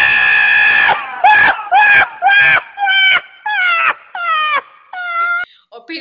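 Donkey braying: one long, loud held note, then a run of rising-and-falling hee-haw cries, about two a second, growing fainter toward the end.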